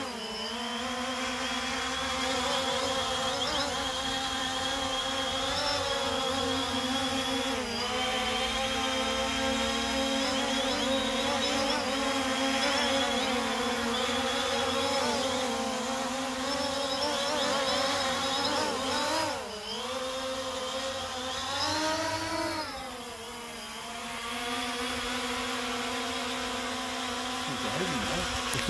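DJI Phantom 3 Standard quadcopter's motors and carbon-fibre propellers buzzing steadily in flight, the pitch wavering throughout. It swings down and up twice in the last third as the drone fails to hold position steadily, a sign of the instability the owner puts down to the new props.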